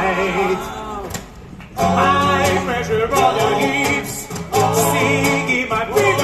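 Male voices singing to acoustic guitars, amplified through a PA. The music drops away briefly about a second in, then comes back.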